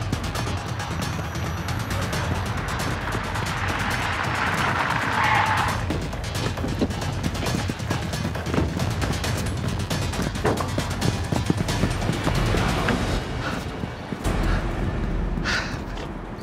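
Film-score music over car engine noise, with a short rushing hiss about four to five seconds in.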